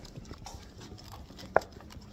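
Footsteps walking at a steady pace with the phone jostling as it is carried. One sharp click or knock, louder than the steps, comes about three-quarters of the way through.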